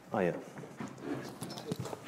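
Light clicks and knocks of a laptop and its cable being handled on a table while it is plugged in, after a brief spoken "Oh yeah".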